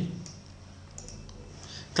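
A few faint computer mouse clicks, spaced out over quiet room tone.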